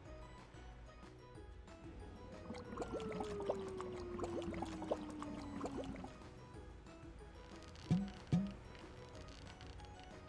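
Cartoon sound effect of wet cement pouring from a cement mixer's chute: a gloopy splattering with a smoothly falling tone for a few seconds, over quiet background music. Near the end come two short, sharp thumps close together.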